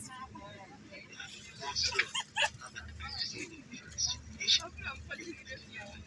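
Indistinct voices talking over the low, steady rumble of a bus engine, heard from inside the bus.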